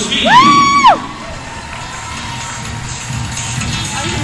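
Crowd of spectators cheering, topped in the first second by one loud, high-pitched whoop that rises, holds and falls; the cheering then settles to quieter, steady crowd noise.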